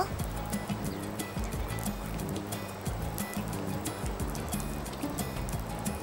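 Gentle background music with light, irregular tapping of rain falling on a car.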